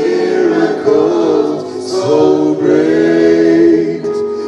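Gospel choir singing in harmony, holding long notes that shift pitch every second or so.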